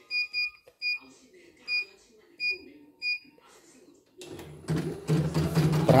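Six short high-pitched beeps from the CNY E900 embroidery machine's control-panel buttons as its stitching speed is raised. About four seconds in, a steady low machine hum starts up.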